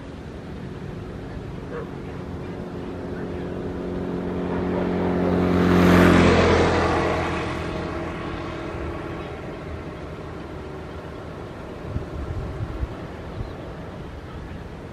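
A motor vehicle passes by: its engine hum builds for about six seconds to a peak, then fades away. A few light clicks sound near the end.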